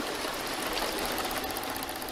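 Rain in an animated film's soundtrack: a steady hiss that has just faded in.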